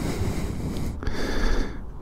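Steady wind noise on the microphone over the low rumble of a Harley-Davidson V-twin motorcycle rolling at walking pace.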